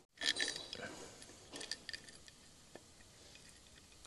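Small metal clinks and taps, a cluster about half a second in and another about a second and a half in, as new bolts are handled and started by hand into the oil pump housing on a Ford CVH engine block.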